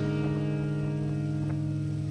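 Background music: a sustained chord holding steady over a low bass, with a couple of faint plucked notes.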